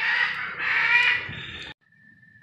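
A bird calling harshly twice in quick succession, the second call longer. The sound cuts off suddenly near the end.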